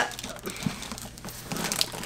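Faint rustling and crinkling of plastic as a packed, flexible plastic tote and the wrapped items in it are handled, with one soft knock well under a second in.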